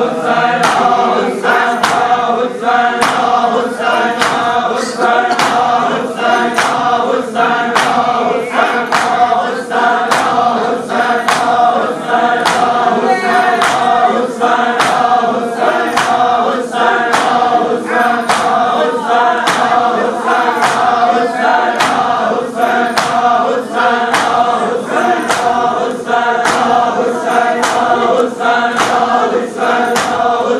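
A crowd of men chanting a noha together to the steady beat of matam, open-handed chest slapping in unison, with the strikes coming evenly more than once a second.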